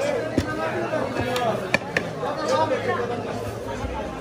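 Background chatter of several voices, with a few sharp knocks of a wooden rolling pin on a wooden board as roti dough is rolled out.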